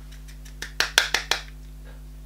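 About six quick, sharp clicks in under a second: a makeup brush knocking against a bronzer powder compact as it is loaded with powder.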